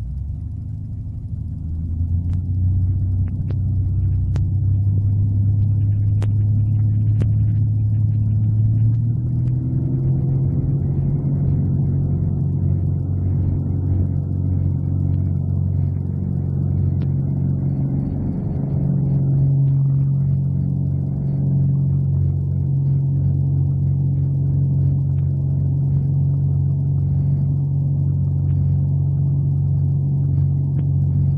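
Corvair 3.0 air-cooled flat-six aero engine and propeller, heard from inside the open cockpit, going up to takeoff power. The sound swells in the first two seconds and then holds loud. Its note steps up in pitch twice, about a third and two-thirds of the way through, as the engine gains revs during the takeoff run.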